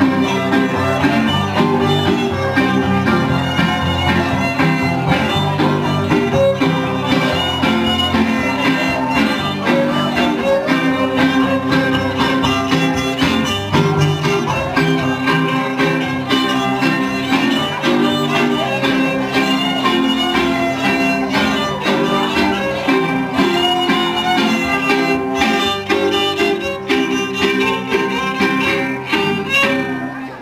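A violin and a guitar playing a tune together, the fiddle carrying the melody over the guitar's accompaniment.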